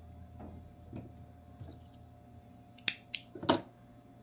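Hands handling a wire stem wrapped in green yarn, with soft rustling and a few faint ticks, then three sharp clicks near the end, the last the loudest.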